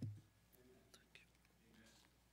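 Near silence: room tone, with the end of a faint low vocal hum at the very start and a few soft ticks after it.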